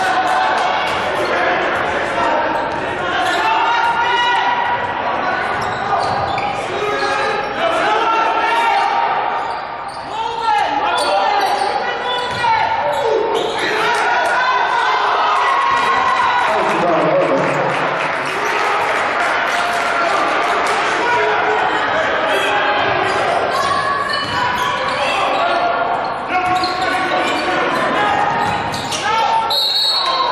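Basketball being dribbled on a hardwood gym floor during play, with players and spectators calling out and the sound echoing around a large gymnasium.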